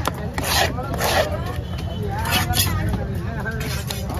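A large knife rasping across a fish on a wooden chopping block in three short strokes, about half a second, a second and two and a half seconds in, over people talking and a steady low engine rumble.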